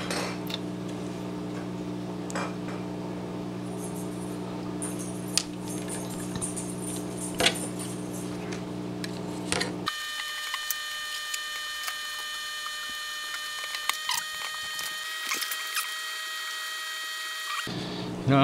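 Occasional light clicks and taps of carbon fiber frame plates, screws and standoffs being handled, over a steady hum that switches abruptly to a higher-pitched whine a little over halfway through.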